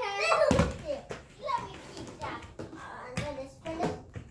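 Young children's voices talking and calling out, with a few sharp knocks, one about half a second in and two more near the end.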